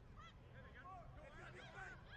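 Faint, distant calls and shouts of voices on the field: several short rising-and-falling cries scattered through an otherwise quiet stretch.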